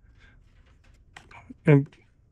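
Faint, scattered small clicks and ticks of hands handling plastic and metal parts behind a grill, then a single short spoken word near the end.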